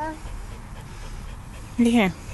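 A toddler's brief whimper near the end, a short whiny cry that drops in pitch as it ends. The whimper comes as the child is being coaxed to touch a dandelion he fears is hot.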